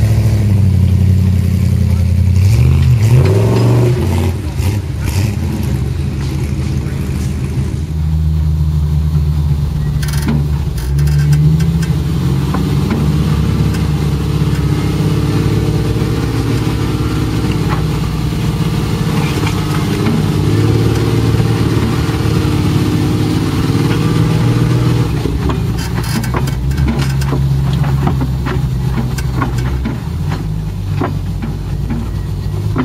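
Off-road vehicle engines. A rising rev comes a few seconds in as a Jeep climbs the trail. After that there is a steady engine drone heard from inside a vehicle's cab as it drives along the trail, its pitch rising and falling with the throttle.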